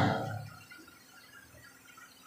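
A man's voice trailing off in the first half second, then near silence: faint room tone.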